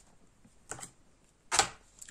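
Large cardboard Dixit playing cards being slid and laid down by hand on a quilted cloth: a couple of soft light clicks a little under a second in, then one louder brushing tap about three quarters of the way through.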